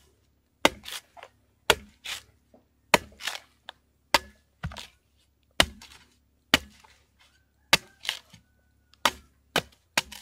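Sharp machete chopping into the thick husk of a young green coconut, trimming it away to open the top: sharp strikes about once or twice a second, some in quick pairs, with short quiet gaps between.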